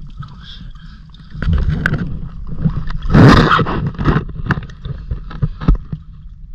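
River water sloshing and splashing as a hand works in it, in irregular bursts with scrapes and knocks, the loudest splash about three seconds in.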